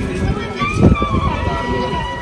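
A voice singing a devotional song in long held, sliding notes, with a low thump about a second in.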